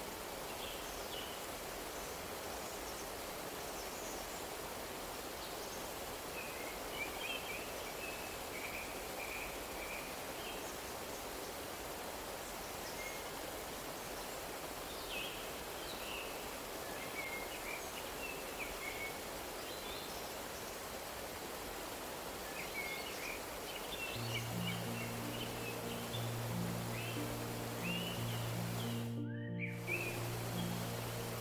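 Steady rush of a shallow stream over rocks, with small birds chirping now and then. About 24 seconds in, slow low music notes come in under the water sound, and everything cuts out for a moment just before the end.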